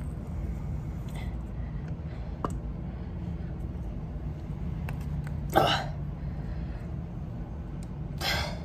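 A sun-dried clay ball being crushed and broken by hand on a tile floor: a light knock about two and a half seconds in, then a louder short burst of cracking about five and a half seconds in as the ball gives way.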